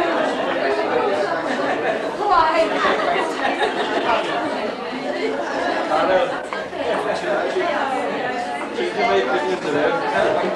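Indistinct chatter of a group of people talking at once in a large room.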